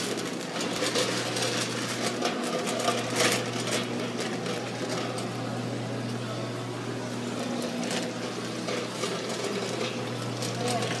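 Shopping cart rattling with irregular clicks and knocks as it is pushed along, over a steady low hum.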